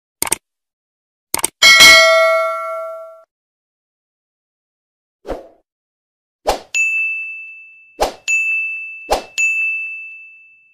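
Subscribe-button animation sound effects: two quick mouse-click sounds, then a chime that rings out and fades. Later come four short whooshes, the last three each followed by a high notification-bell ding.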